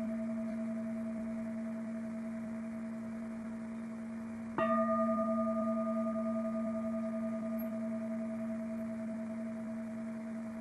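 Large singing bowl struck with a wooden striker: the ring of an earlier strike fades slowly, then a second strike about four and a half seconds in sets it ringing again, a deep sustained hum with higher overtones that wavers slightly as it dies away.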